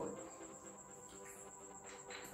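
Quiet room with a faint, steady high-pitched whine that holds one pitch throughout, under faint low sustained tones.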